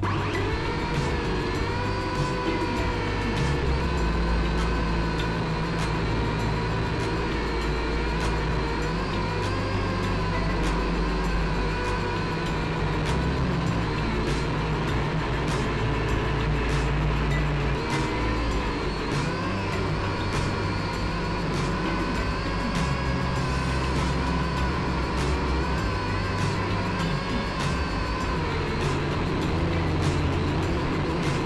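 Syma X5C quadcopter's small electric motors and propellers whining in flight, the pitch wavering gently as the throttle changes, heard through the drone's onboard camera. Background music with a steady beat and bass runs underneath.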